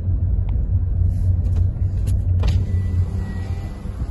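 Car engine and road noise heard from inside the cabin while driving on a country lane: a steady low rumble, with a few light clicks.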